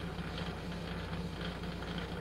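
A steady low hum with a faint hiss: background noise on a video-call line between two speakers' turns.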